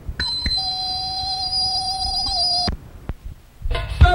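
A break in a live go-go band performance: a single held note sounds steadily for about two and a half seconds and then stops. A brief lull with one click follows, and the band's music comes back in near the end.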